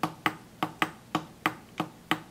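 Keys on a replica Apollo DSKY keypad (Open DSKY) clicking under rapid, repeated presses, in an even run of sharp clicks about five a second.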